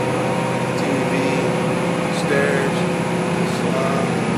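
Twin diesel engines of a 65-foot Ocean yacht running at cruise, a steady drone heard inside the cabin, with faint voices over it.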